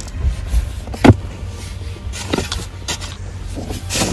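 Steel shovel blade digging into dry, stony soil: a sharp strike about a second in is the loudest, with two lighter strikes later, over a low rumble.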